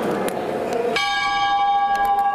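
Busy background noise, then about halfway in a sustained metallic ringing tone with many overtones, like a bell, cuts in.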